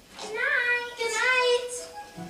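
A young girl's high voice singing two short phrases: the first bends upward and the second is held on a long note.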